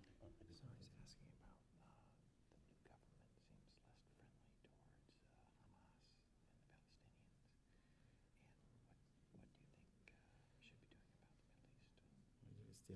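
Near silence, with faint whispering between two men conferring closely.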